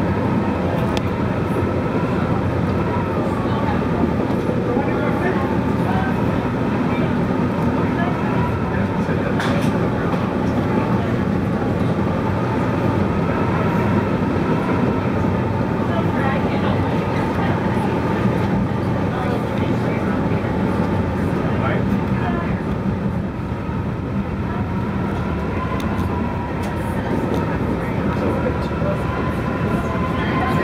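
Metra commuter train running at speed, heard from inside the cab car: a steady rumble of wheels on rail with a faint steady whine and occasional clicks over the track.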